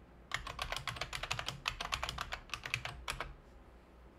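Typing a password on a computer keyboard: a quick run of keystrokes for about three seconds, stopping shortly before the end.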